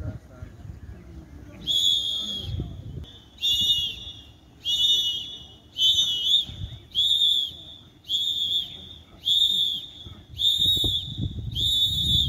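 A trainer's whistle blown in nine short blasts at a steady pace, about one every second and a quarter, calling the beat for a group exercise drill.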